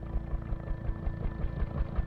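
Helicopter rotor beating as it flies low overhead: a fast, even, low chopping.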